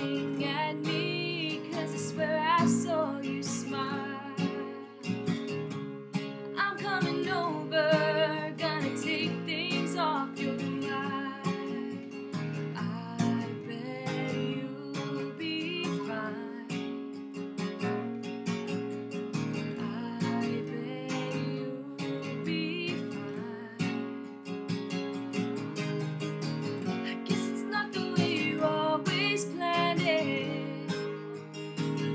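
Acoustic guitar strummed and picked, with a woman singing over it in phrases, recorded through the camera's own microphone.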